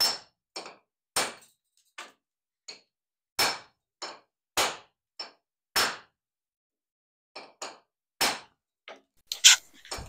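A hand hammer striking a chisel against concrete: about fifteen sharp blows with a slight metallic ring, some hard and some light, with a pause of a second and a half partway through.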